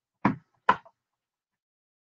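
Two sharp knocks about half a second apart, the second louder, from kitchenware being knocked about while food is handled.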